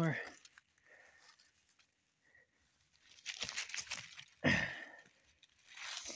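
Dry grass and fallen leaves rustling and crunching as cut scraps of metal are pulled up from the ground by hand, in short bursts about three seconds in and a louder one about four and a half seconds in.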